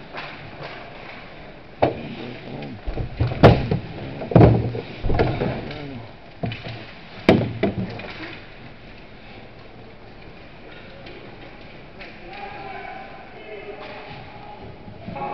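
Ice hockey play close by in an indoor rink: a handful of sharp bangs and thuds of puck, sticks and players against the boards, heaviest in the middle few seconds, with players' shouting voices.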